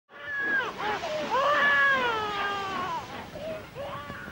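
A series of cat-like cries: a few short ones, then a long one of about a second and a half that slowly falls in pitch, then two short ones near the end.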